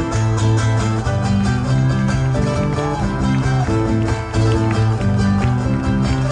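Live music from a stage ensemble of musicians: sustained held notes over a strong bass line with a steady beat.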